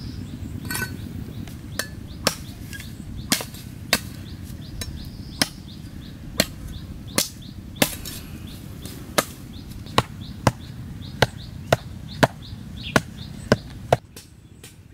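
Knife chopping a wooden stick, with sharp chops at about one and a half a second over a steady low background noise.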